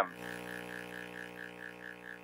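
Faint steady drone of several held tones, like a soft sustained chord. A higher tone in it wavers quickly, about five or six pulses a second.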